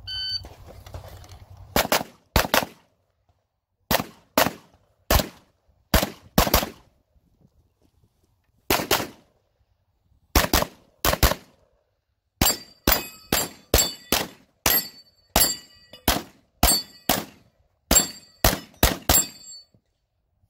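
A short electronic beep from a competition shot timer, then rapid 9mm fire from a B&T APC9 pistol-calibre carbine. About two dozen shots come mostly in quick pairs, with short pauses between strings. From the middle on, each shot is followed by a brief high ring.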